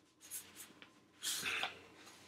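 Paper rustling softly: one brief rustle about a second and a quarter in, after a couple of faint ticks.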